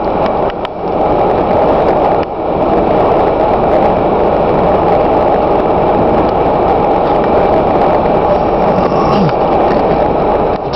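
Loud, steady rumble of vehicles running in snow, dipping briefly about two seconds in.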